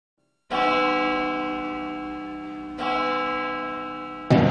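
A large church bell struck twice, about two and a half seconds apart, each stroke ringing on and slowly fading.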